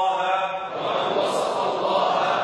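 A man chanting in Arabic into a microphone, drawing the words out on held notes near the start.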